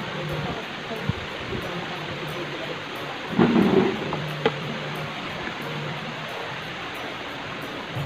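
Steady room noise with faint background music and voices, and a low steady hum. A brief louder sound comes about three and a half seconds in, followed by a sharp click.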